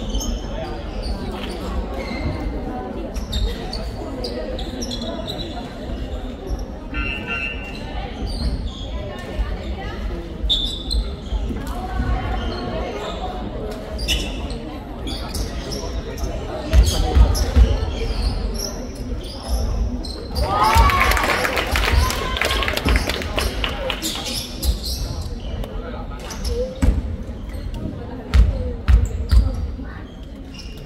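A basketball bounced on the gym floor in short runs of dribbles at the free-throw line, with spectators talking throughout. A loud burst of voices comes about two-thirds of the way through.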